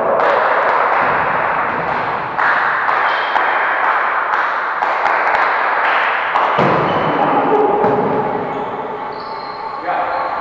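Volleyball players' voices and calls echoing in a sports hall, with the thuds of the ball being hit and landing.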